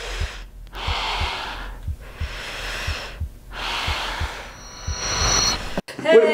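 A person breathing heavily, long noisy breaths with short pauses between them, over faint low thuds about three a second. A brief high whine sounds near the end before the sound cuts off abruptly.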